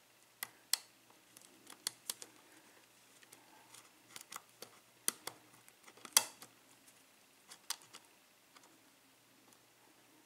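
Lock pick and tension wrench working the pins of an EVVA euro cylinder: scattered, irregular, sharp metallic clicks, the loudest about six seconds in.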